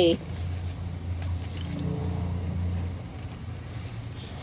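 A low, steady motor hum that swells and then fades out about three seconds in.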